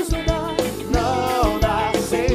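Live forró band playing: an accordion melody over drum kit, congas and bass with a steady dance beat.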